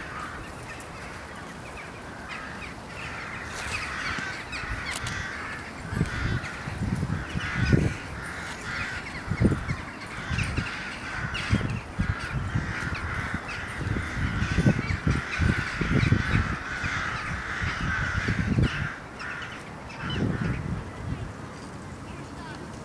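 Crows cawing steadily as a flock. From about six seconds in, irregular low gusts of wind buffet the microphone.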